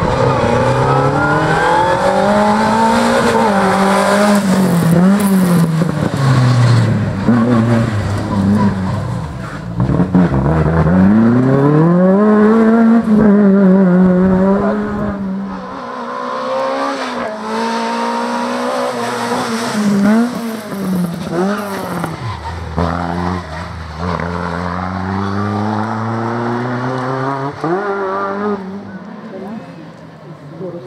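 Two-litre Group A Fiat Ritmo's four-cylinder engine revving hard through a cone slalom. Its pitch climbs and drops again and again as the car accelerates and brakes between the gates, settling lower and steadier near the end.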